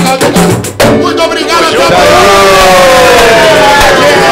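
Pagode song sung live by several voices together, over hand percussion and clapping in the first second. In the second half the voices hold one long line that slides down in pitch.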